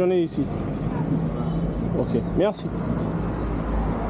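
Street background of road traffic: a steady low hum and rumble, with short bits of talk at the start and again about two and a half seconds in.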